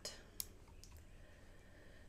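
Near silence broken by one sharp mouse click about half a second in, and a fainter click just after.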